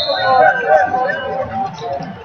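Voices talking and calling out, with a steady high tone that stops about half a second in.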